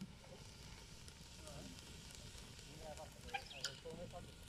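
Wood campfire burning with a steady hiss and a couple of sharp crackles near the end, under a hanging pot of chopped vegetables. Faint voices in the background.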